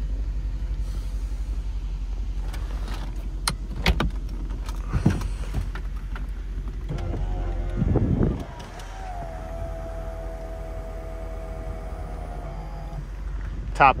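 2004 Ford Thunderbird's power convertible top being lowered: a few clicks as the single-handle header latch is released, a louder mechanical stretch about seven seconds in, then the top's motor whining at a steady pitch for about four seconds before it stops. A low steady hum runs underneath.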